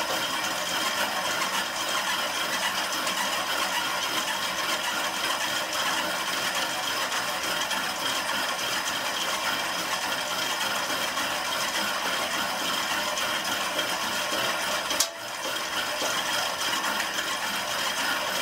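Spinning bike's flywheel and drivetrain whirring steadily under fast pedalling during a hard interval, with one sharp click near the end.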